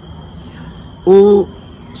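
A man's voice: one brief held vowel-like sound, a hesitation syllable, about a second in, between stretches of near-quiet hiss. A faint steady high whine runs underneath.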